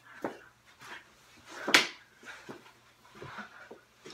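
Knee hockey play on a carpeted floor: short knocks and scuffs of mini hockey sticks and a small ball, with one louder, noisier burst a little under two seconds in.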